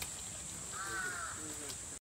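A single harsh animal call lasting about half a second, about a second in, with a lower tail after it, over a steady high hiss.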